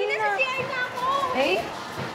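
Speech: a girl talking, over a background hubbub of children's voices.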